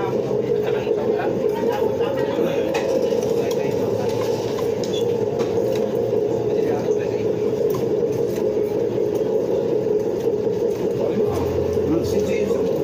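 Restaurant din: indistinct chatter of other diners over a steady hum, with a few light clicks of spoons and forks on plates.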